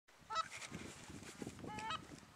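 Goose honking: a short honk near the start, then a longer honk near the end.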